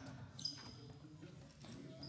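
Basketball bouncing on a hardwood gym floor, with short high sneaker squeaks about half a second in and again near the end. Faint voices sound in the background.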